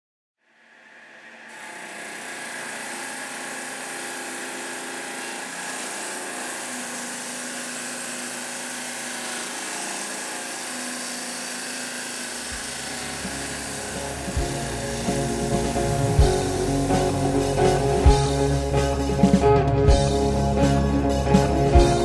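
Diamond saw blade cutting granite, a steady whine that fades in over the first two seconds. About twelve seconds in, rock music with bass and a drum beat comes in and grows louder over it.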